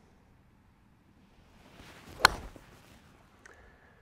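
A golf iron striking a teed-up ball: one sharp click about two and a quarter seconds in, just after a short rising swish of the swing. The ball is caught a little low on the clubface.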